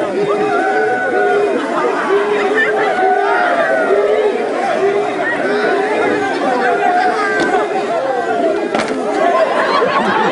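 A group of male voices chanting and calling in short, repeated held notes, mixed with shouting and crowd chatter.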